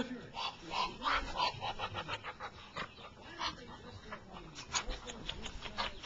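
Muscovy duck making a run of short, soft breathy sounds, irregularly spaced, with a quick cluster of light clicks near the end.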